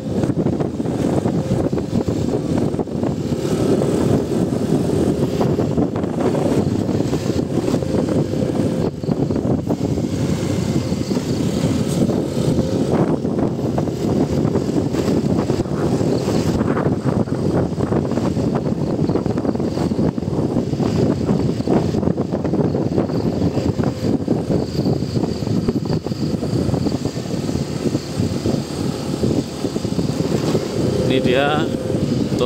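Motorcycle engine running steadily while riding along a road, with wind rumbling on the microphone.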